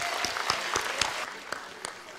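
Audience applauding, the clapping thinning out and dying away in the second half.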